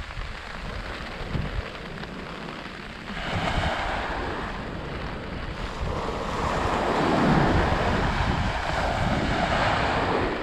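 Small waves breaking and washing up a sandy beach. The surf swells about three seconds in and again, louder, from about six seconds, with wind rumbling on the microphone.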